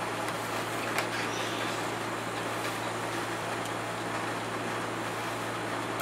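Steady background hiss with a low hum, with a faint knock about a second in as the guitar is handled while the player sits down.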